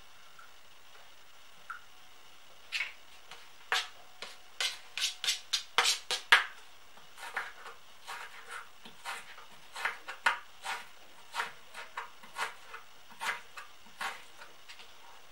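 Kitchen knife chopping scooped-out black radish flesh on a cutting board: a run of sharp, uneven knocks, starting about three seconds in and going on to the end.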